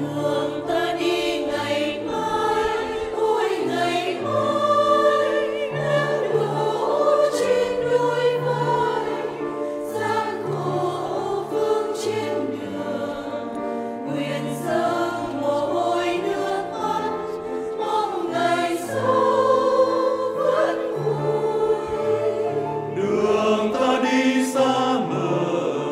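Mixed church choir of women's and men's voices singing together, with sustained held notes.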